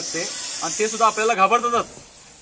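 Russell's viper giving a long steady defensive hiss while held up by the tail, cutting off suddenly about a second and a half in.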